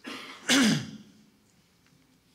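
A man clearing his throat once. It is loudest about half a second in and ends in a falling grunt.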